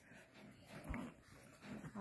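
Faint sounds of small puppies moving about and being stroked by hand on a blanket, with a soft bump about a second in.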